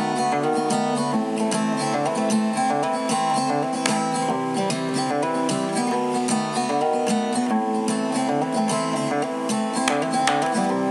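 Lo-fi folk song: acoustic guitar strummed in a steady rhythm, with no singing.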